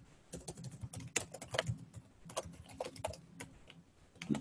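Typing on a computer keyboard: a run of separate key clicks, several a second.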